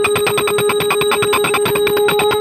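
Puja bell ringing rapidly and continuously, with a steady held tone sounding over it.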